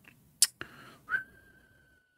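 A single long whistled note that starts a little after a second in and drifts slightly down in pitch, held past the end, after a sharp click about half a second in.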